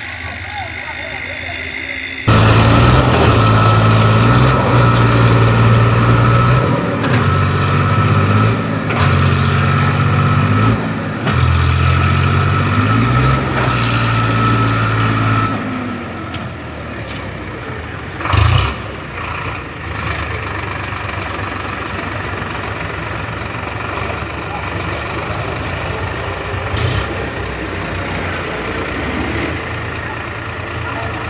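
A diesel tractor engine, on an Eicher 557, running under load as the tractor manoeuvres a loaded tipping trailer. It becomes loud suddenly about two seconds in and rises and falls in pitch with the throttle for about the first half. It then settles to a quieter, steadier running, with one short louder burst about 18 seconds in.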